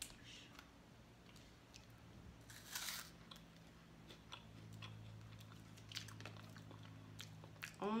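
Quiet biting and chewing of a chocolate snack with a puffed filling, with one louder crunch about three seconds in.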